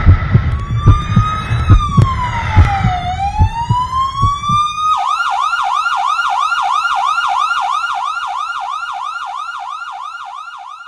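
Emergency vehicle siren: a slow rising and falling wail over low thumps and rumble, switching about halfway through to a fast yelp of about four cycles a second that gradually fades.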